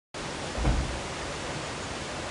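Steady rushing noise of flowing stream water. There is a brief low thump about two-thirds of a second in.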